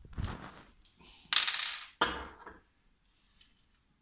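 Small hard objects handled on a workbench: a brief rustle, then a loud metallic clatter lasting about half a second, and a shorter knock-and-rattle just after it.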